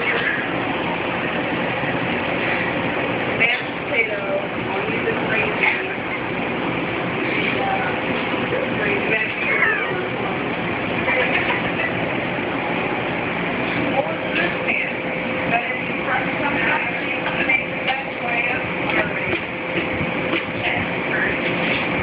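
Indistinct voices over a steady, dense wash of room noise, with a few light clicks and a faint constant tone.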